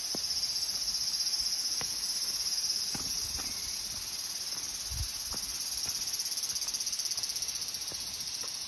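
Cicadas singing in a steady, high-pitched chorus with a fast pulsing texture, with a few soft footsteps on a gravel path.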